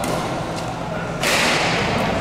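Badminton racket hitting the shuttlecock during a rally: a lighter hit at the start, then a hard, sharp hit about a second in that dies away over about half a second.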